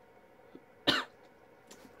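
A single short cough about a second in, just after exhaling a hit of mint e-juice vapour.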